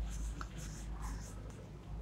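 Whiteboard eraser rubbing across a whiteboard in about three short wiping strokes, erasing marker ink.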